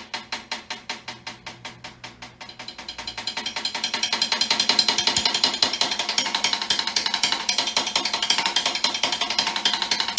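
Snare drum played with sticks: an even run of single strokes, about eight a second, growing softer, then from about three seconds in denser strokes that swell louder and stay loud.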